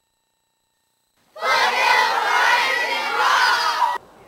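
A group of children shouting and cheering together, many high voices at once. It starts about a second and a half in and cuts off suddenly.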